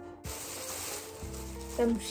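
Thin plastic bag crinkling and rustling as a plastic clamshell of blueberries is unwrapped from it. The crackle starts suddenly about a quarter second in.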